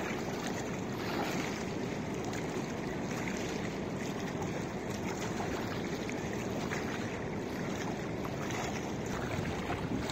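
Steady wash of wind on the microphone and small waves lapping against a paved shoreline, an even rushing noise with no distinct events.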